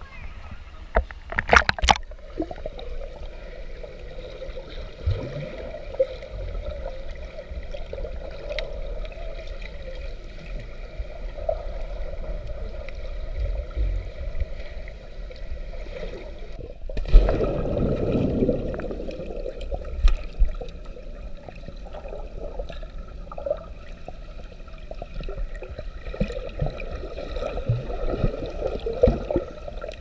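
Swimming-pool water sloshing and gurgling, heard muffled through a camera held underwater, over a steady hum. There are sharp splashes near the start and a louder rush of water about seventeen seconds in.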